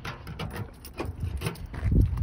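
Footsteps on gritty asphalt: an irregular series of short scuffs and taps, with a low rumble near the end.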